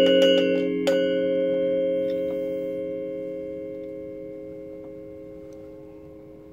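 Balinese gender (bronze-keyed metallophone with bamboo resonators) played with mallets: a quick run of notes ends with a last stroke about a second in, closing the piece, then the bronze keys ring on together, fading slowly.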